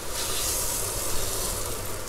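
Yellowfin tuna searing in a very hot, oiled fry pan: a steady oily sizzle that is brightest at first and eases a little.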